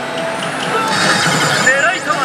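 Pachislot hall din: machines' electronic sound effects and short warbling tones over a steady wash of hall noise.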